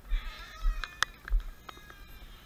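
A high, wavering animal cry, followed by several sharp clicks and knocks.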